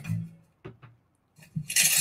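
The last moment of a promotional trailer's soundtrack fades out, followed by two short clicks and a brief silence. About three-quarters of the way through, the trailer audio starts up again.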